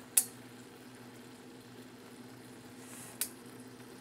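Red sugar syrup boiling faintly in a small saucepan, with nearly all its water boiled off as it climbs toward hard-crack temperature, over a steady low hum. A sharp click comes just after the start, and a softer one about three seconds in.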